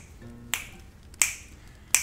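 Finger snaps in a steady beat: three sharp snaps about two-thirds of a second apart.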